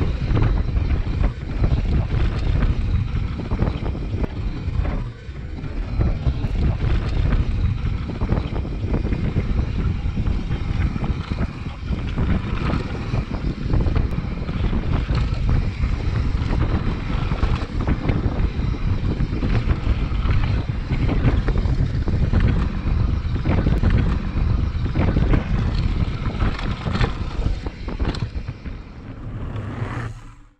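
Wind buffeting the action camera's microphone while a mountain bike rides down a dirt trail, with steady tyre rumble and frequent knocks and clatters from the bike over bumps.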